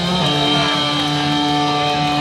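Live rock band playing, with an electric guitar holding long sustained notes.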